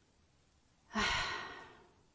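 A woman's single sigh about a second in: a breathy exhale that fades away over most of a second.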